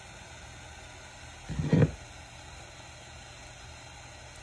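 Small propane torch burning with a steady, even hiss. About a second and a half in, a brief, loud low sound cuts in for under half a second.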